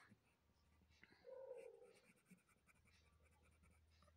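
Very faint scratching of a colored pencil shading on paper, barely above the quiet room tone.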